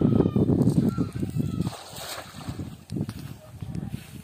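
Cast net thrown into a pond: a loud low rumble on the microphone as it is swung out, then its weighted rim hitting the water about two seconds in.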